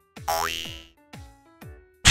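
A cartoon-style boing sound effect rising in pitch about a quarter second in, over light background music with plucked notes about twice a second.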